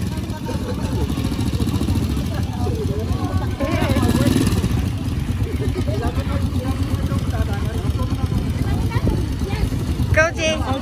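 Small Honda motorcycle engine of a tricycle idling steadily, with people talking nearby.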